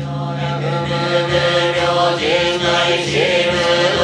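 Shingon Buddhist monks chanting a sutra together, in long held notes that slide slowly up and down in pitch.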